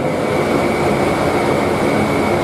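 A steady rushing background noise with a thin, steady high whine above it, holding level throughout.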